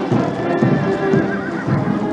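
Military band music playing, with the hooves of cavalry horses clip-clopping on the road.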